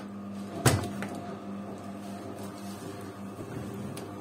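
Zanussi front-loading washing machine door being pulled open: one sharp click of the latch releasing a little over half a second in, then a lighter click.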